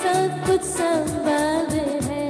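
A woman singing a Hindi Christian worship song into a microphone, over backing music with a steady drum beat.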